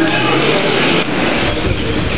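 A crowd shouting, then from about a second in the low running noise of a pickup truck's engine as it moves in.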